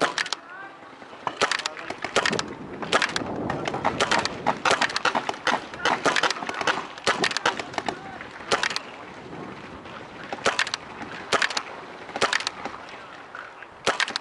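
Paintball markers firing: sharp, irregular pops, sometimes several in quick succession, spread through the whole stretch.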